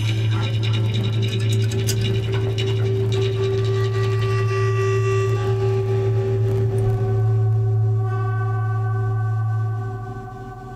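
Live improvised instrumental drone music: a sustained low drone under held higher tones and the shimmering wash of a large gong, the sound dying away right at the end as the piece finishes.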